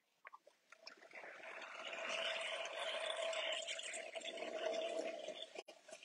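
Electric potter's wheel running with a steady hum while wet hands work the slip-covered clay plate, a wet swishing. It builds about a second in and fades near the end.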